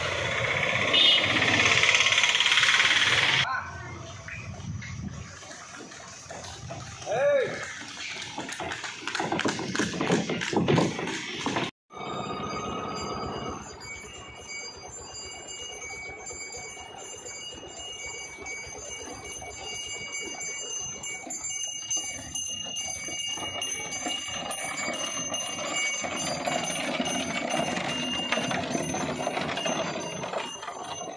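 Street noise for the first few seconds, then after a sudden cut a steady high ringing of small bells that goes on throughout.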